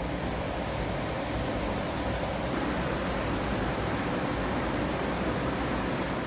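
Window-mounted evaporative (swamp) cooler running with a steady fan rush, just switched on through a smart plug.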